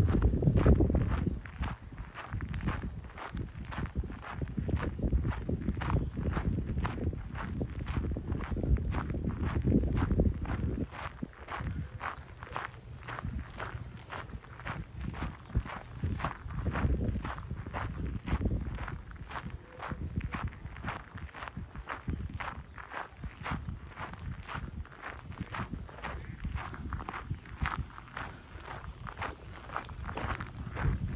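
Footsteps crunching on a gravel path, a steady walking pace of about two steps a second.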